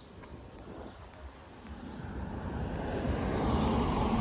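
A car driving by on the street, its noise growing steadily louder from about halfway through.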